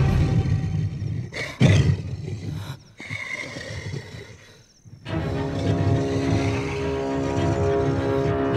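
Film soundtrack: a monster's deep roar with a sudden loud hit near two seconds in, then a quieter stretch that dies away almost to silence. About five seconds in, the score comes back with steady held notes.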